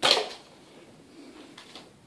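A rubber band being shot: one sharp snap right at the start that dies away within a fraction of a second, followed by faint small clicks.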